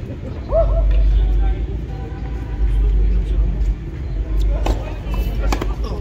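Wind buffeting the phone's microphone with a heavy low rumble, over faint voices, then two sharp tennis-ball strikes about a second apart near the end.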